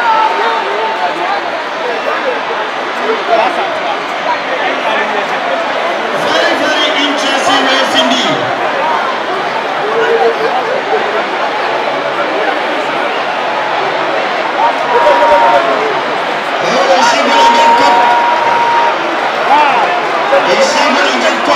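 Large stadium crowd shouting and cheering through a running race, a dense mass of many voices that surges louder twice, about six seconds in and again near the end. A few long, steady high notes sound over the crowd in the later part.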